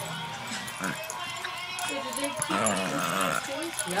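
A shih tzu making funny 'Chewbacca' vocalizations: pitched, wavering calls that swell in the second half, with people talking in the background.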